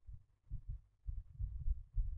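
Irregular low thuds from a stylus working on a drawing tablet while words are handwritten, carried through to the microphone.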